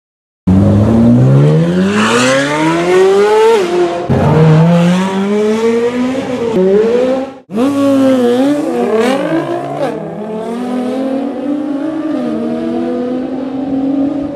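A high-revving performance engine accelerating hard, its pitch climbing and then dropping at each upshift. After a brief break about seven and a half seconds in, more revving follows and settles into steadier running.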